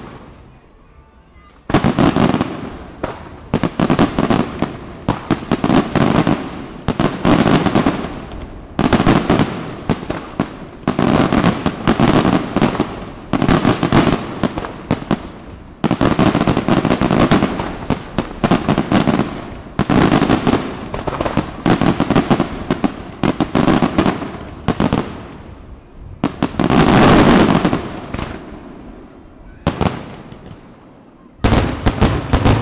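Daytime aerial fireworks: shells bursting overhead in rapid crackling volleys. The volleys come in dense waves a second or two apart from about two seconds in, and the loudest, longest barrage comes a few seconds before the end.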